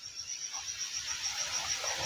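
A chirping insect: a steady run of short, high-pitched chirps, about seven a second, over a faint hiss.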